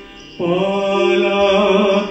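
Indian classical vocal accompaniment to dance. After a brief pause, a singer comes in about half a second in and holds one long, slightly wavering note.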